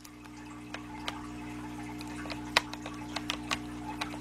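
Scattered light clicks and taps of a USB plug being handled and pushed into a laptop's port, over a steady low hum.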